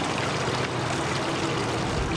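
A small waterfall splashing steadily over rocks into a pond.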